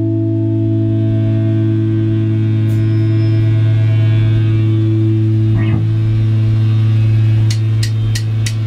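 Electric guitar amplifiers sustaining a loud, steady low drone with amp hum between songs. Near the end come two sharp clicks, the start of an evenly spaced drumstick count-in.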